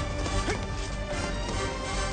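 Action film score playing, with a crash in the first half second.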